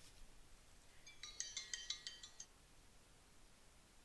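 A phone ringtone: a quick run of short, high, bright chime notes lasting about a second and a half, starting about a second in. Otherwise near silence.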